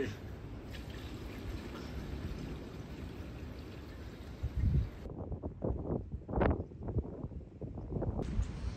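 Diesel poured by hand from an open can into a tractor's fuel tank: a steady gushing pour for about five seconds. It then gives way abruptly to a quieter background with a few dull knocks.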